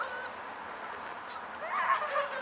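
A bird calling briefly, once just at the start and again more loudly about one and a half seconds in, over steady outdoor background noise.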